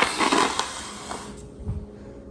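A ceramic plate set down on a stone countertop with a sharp click, then about a second of scraping and handling noise, and a soft thump near the end.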